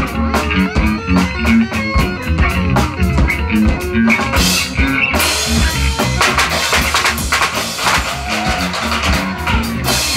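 A noise-rock band playing live: pounding drum kit and electric guitar. About five seconds in, the sound thickens and grows brighter.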